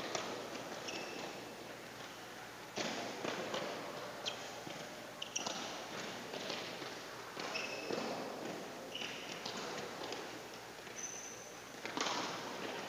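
Running footsteps of players doing footwork drills on a badminton court mat: many quick thuds, with short high squeaks of sports shoes scattered through.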